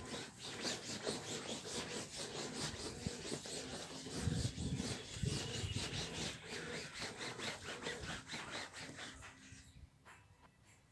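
Damp, wrung-out cloth rubbed back and forth over a quilted fabric mattress top in quick, repeated scrubbing strokes. The sound fades out near the end.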